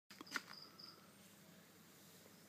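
Faint, short, high-pitched insect chirps repeating, after two sharp clicks right at the start.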